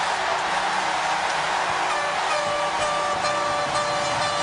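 Hockey arena crowd cheering a game-winning overtime goal, a steady loud roar, with music under it that comes through as steady tones from about halfway in.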